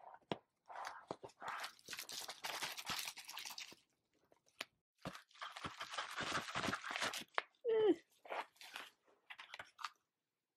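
Makeup palette packaging being handled and unwrapped: two long spells of crinkling, crunching rustle with scattered small clicks.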